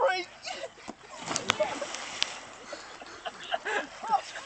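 A loud shout at the start, then about a second in a person splashing into lake water, followed by scattered shouts from onlookers.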